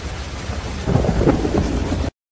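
Thunder sound effect laid over a title card: a low rolling rumble that swells again about a second in and then cuts off abruptly.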